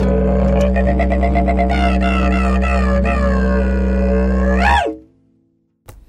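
Smooth, mellow reggae track playing out its instrumental ending over a steady low drone, with gliding tones above; the music stops suddenly about five seconds in.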